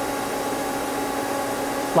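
Steady whirring hum of a powered-up Mazak CNC lathe standing idle: a low, even tone under a constant rushing noise.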